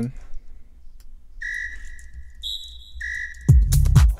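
Three short, steady electronic whistle notes, one a low one, then one about an octave higher, then the low one again, previewed singly in the sequencer. About three and a half seconds in, the tech-house track loop starts playing with kick drum, bass and hi-hats, much louder than the notes.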